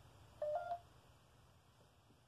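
A short electronic beep about half a second in: two steady tones, the second slightly higher, then faint room tone.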